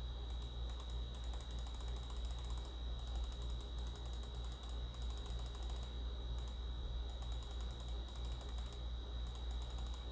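Steady low electrical hum and a thin, steady high whine from the recording setup, with faint patches of rapid ticking from computer use at the desk.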